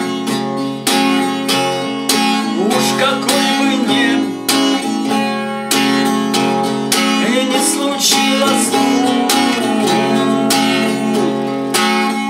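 Eight-string Ovation Celebrity CC 245 acoustic guitar strummed in steady chord strokes, with a man singing over it.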